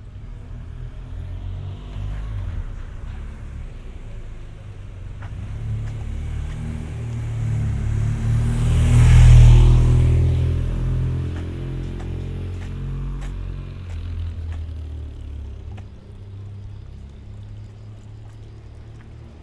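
Touring motorcycle passing close by: its engine builds up, is loudest about nine seconds in, then fades as it rides away.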